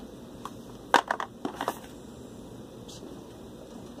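Stiff cardboard hero cards from 5-Minute Dungeon being handled and slid against one another: a short run of sharp clicks and scrapes between about one and two seconds in, the first the loudest.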